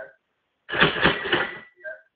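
The eBay app's 'cha-ching' sale notification sound: a cash-register ka-ching lasting about a second, starting under a second in, with a bell tone ringing on briefly after it.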